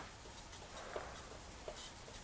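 Faint, quiet background with a few soft clicks and a brief light rustle near the end.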